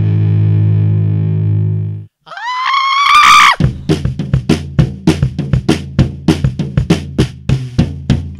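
Rock music at a change of song. A held band chord rings and cuts off about two seconds in. After a brief silence, a single note glides upward and swells. Then a drum kit comes in with a fast, steady run of bass drum and snare hits.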